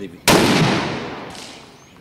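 A single rifle shot from a scoped, bipod-mounted bolt-action sniper-style rifle fired prone, about a quarter-second in. Its sharp report rings out and dies away over about a second and a half.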